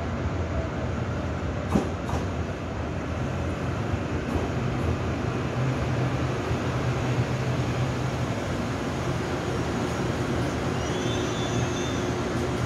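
Taiwan Railway EMU800 electric multiple unit pulling into a station platform and slowing to a stop, with steady running noise and a low hum. There is a single sharp click about two seconds in. Thin high-pitched squeals come near the end as it comes to rest.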